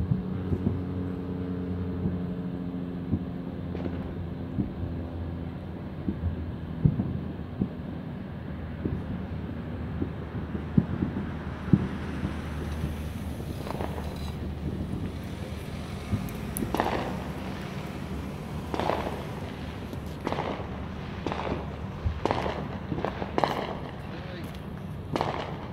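Fireworks going off in scattered sharp pops, the bangs coming more often in the second half. A steady low engine hum runs underneath for the first few seconds and then fades.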